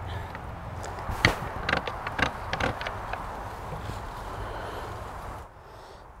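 A large 4x5 twin-lens reflex camera being handled and adjusted: a few scattered soft clicks and knocks, the clearest about a second in, over a low steady hum.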